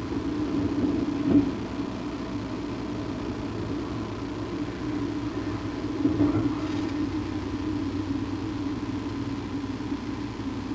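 A steady low rumble, engine-like, with two brief louder swells, one about a second and a half in and one about six seconds in.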